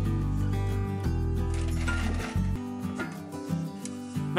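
Background music with sustained chords over a deep bass; the bass drops out about two and a half seconds in and the music goes on more thinly.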